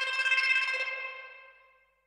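A short electric-guitar earworm part played solo, run through Saturn distortion, the Cubase Metalizer and the Cubase Chopper. It is one steady high note with a bright stack of overtones that fades away over the second half and is gone before the end.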